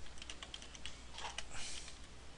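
Computer keyboard keys clicking in quick, uneven succession as a sentence is typed, about a dozen keystrokes.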